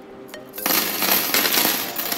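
A handful of hinged metal binder rings dropped and spilling onto a table: a loud jangle of metal on metal that starts about half a second in and lasts over a second, fading near the end, over electronic background music.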